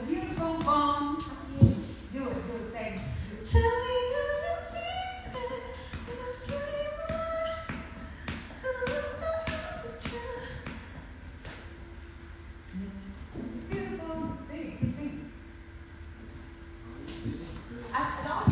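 A woman singing unaccompanied, with long held notes that slide up and down, into a handheld microphone. Two sharp thumps land in the first four seconds.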